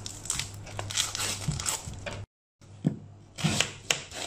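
Dry, papery onion skin being scraped and torn off with a small knife, a run of crackly rustles. After a short break, three or four sharp knocks of a knife cutting through the peeled onion onto a wooden cutting board.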